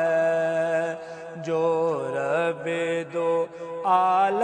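Male voice singing a naat: a long held note for about the first second, then shorter sung phrases with brief gaps.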